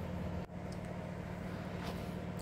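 Steady low hum with a brief dropout about half a second in.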